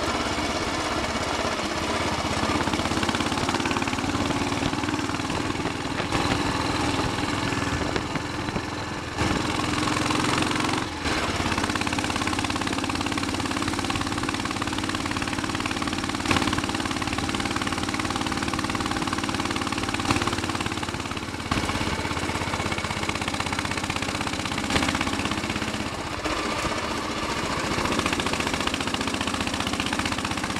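Royal Enfield Bullet 500 single-cylinder four-stroke engine thumping steadily as the motorcycle is ridden along, with a hiss of wind over it. The engine note dips briefly a few times.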